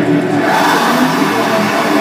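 Live harsh noise music: a loud, dense wall of electronic noise from a tabletop rig of effects pedals, with a few held droning tones. A vocalist's distorted yelling through the microphone rises over it about half a second in.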